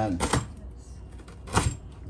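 Santoku knife slicing through hard galangal root and striking a plastic cutting board: sharp knocks, two close together near the start and a louder one about a second and a half in.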